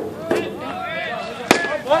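A single sharp crack about one and a half seconds in, the impact of a pitched baseball, heard over people talking nearby.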